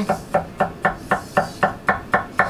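Rapid, even chopping of a Japanese gyuto chef's knife on a wooden end-grain cutting board, about four knocks a second.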